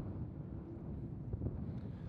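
Wind buffeting the microphone outdoors, a steady low rumble, with a faint steady hum in the first second or so.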